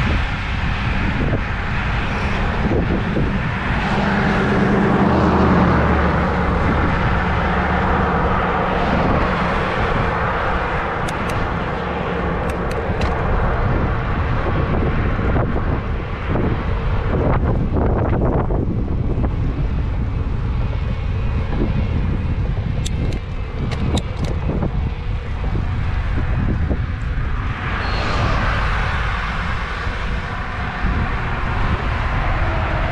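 Wind rushing over the microphone of a bicycle-mounted action camera while riding, with motor traffic passing on the highway beside the bike. A vehicle swells past about four to nine seconds in and another near the end, with a few light ticks in between.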